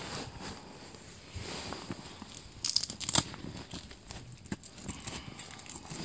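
Nylon fabric of a pop-up ice shelter rustling and crinkling as a spreader bar is strapped to the frame pole, with two louder rasps about three seconds in.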